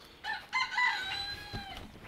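Domestic fowl calling: a few short notes, then one longer call that falls slightly in pitch.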